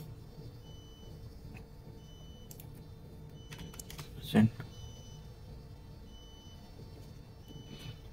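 A few faint computer keyboard clicks as fill percentages are typed into a ship's loading computer, over a steady low room hum. A short vocal sound cuts in about halfway through.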